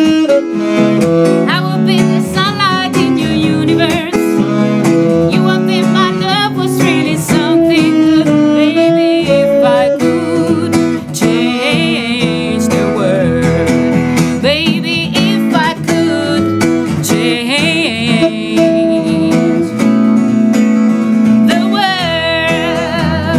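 Live acoustic music: an acoustic guitar accompanying a saxophone playing a melodic line with vibrato.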